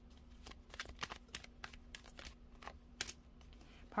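Tarot cards being handled: a card flicked off the deck and laid on the cloth, heard as a run of light, irregular clicks and soft flicks of card stock.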